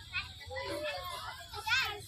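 Children playing and calling out in a playground, with one loud high-pitched child's shout near the end.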